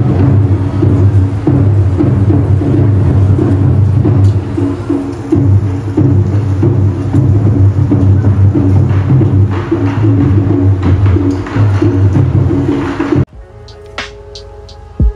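Taiko drum ensemble playing: a dense, continuous run of deep drum strikes mixed with sharper clicking hits. It cuts off abruptly about a second before the end.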